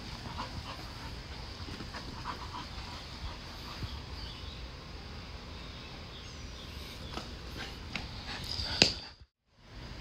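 Dog panting with short whimpers as it plays. A sharp click comes near the end, then the sound cuts out for about half a second.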